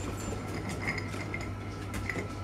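Light metallic clinks, several small ones in quick succession around the middle, over a steady low hum.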